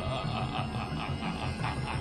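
A man's slow, rhythmic chuckle, heard over background music with a steady low beat.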